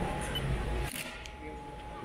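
Outdoor street-market background: faint voices, a steady thin high hum, and a single sharp click about a second in.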